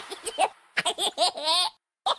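Cartoon children's voices giggling and laughing in short bursts, with a brief pause about half a second in, then a longer run of giggles that stops shortly before the end.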